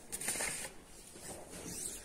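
Faint rustling of a paper pattern sheet and fabric being handled on a cutting table, mostly in the first half-second, then dying away.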